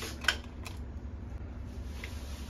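A few short plastic clicks and rattles as novelty gel pens are picked through in a cup on a shelf, the loudest about a quarter second in, over a low steady hum.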